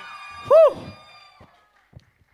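A single short, high-pitched shout from a voice in the hall, rising and falling in pitch, about half a second in, over the fading echo of a preceding call.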